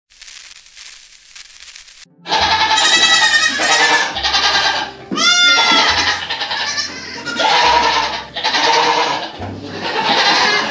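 A barn full of Nigerian Dwarf goats bleating loudly over one another, starting about two seconds in after a faint opening, with one rising-and-falling call standing out near the middle. This is the morning clamour the goats raise when someone walks into the barn.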